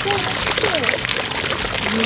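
Water from a tiered stone garden fountain splashing steadily, its thin jets falling into the basin.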